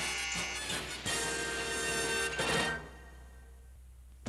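Closing music sting of a cartoon: a held chord that fades out about three seconds in.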